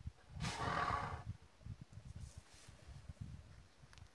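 A single animal call lasting about a second, starting about half a second in, over an irregular low rumble.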